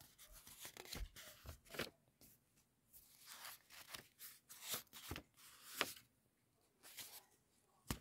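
Faint, scattered rustles and soft clicks of handling close to a phone's microphone, a dozen or so short sounds spread across several seconds.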